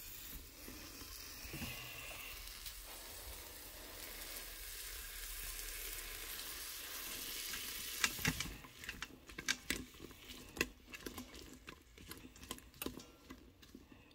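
Frozen green beans sizzling steadily in butter and bacon grease in a stainless steel pot. About eight seconds in the sizzle fades and a run of light, irregular clicks and taps follows.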